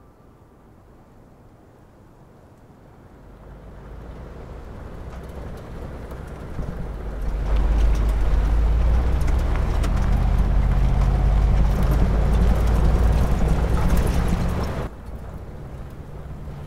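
Off-road SUV driving fast on a sandy dirt track: a low engine and tyre rumble builds over several seconds, stays loud with a steady engine note, then cuts off suddenly near the end.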